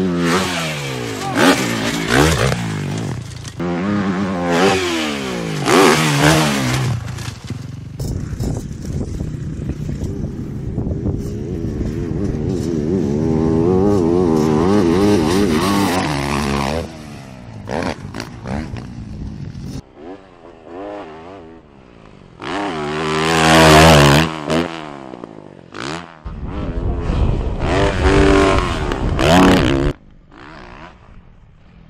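Motocross dirt bike engines revving hard and backing off the throttle over a series of short clips, the pitch rising and falling with each run-up. There is a long steady pull in the middle and a loud rev about three-quarters of the way through.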